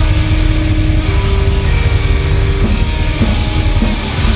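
Black metal band playing live: distorted electric guitars and bass over drums, loud and dense, with a steady run of cymbal hits.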